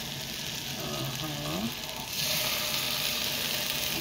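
Marinated chicken sizzling in hot oil in a wok. The sizzle grows louder about halfway through as another raw piece goes into the pan.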